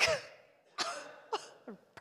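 A woman laughing into a handheld microphone: a sharp first burst, then three shorter breathy ones.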